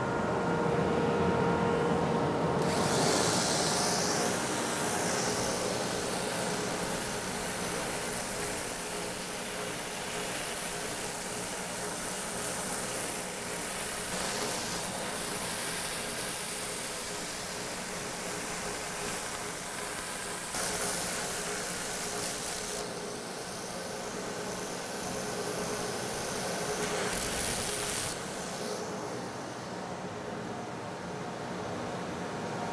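Stationary edge belt sander running steadily, with the fiberglass-and-wood edges of a bow limb pressed against the belt. The grinding hiss comes and goes in long passes and eases near the end. The limbs are being narrowed to lower the bow's draw weight.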